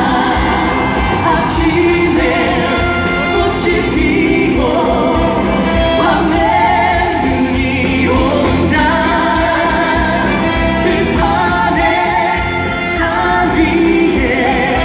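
A live trot song: a woman singing with strong, wavering vibrato over a full band, heard through a concert hall's loudspeakers.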